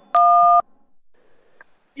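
A single touch-tone telephone keypress beep, two steady tones sounding together for about half a second, in answer to an automated collect-call prompt: the key press that accepts the call. A faint line hiss follows.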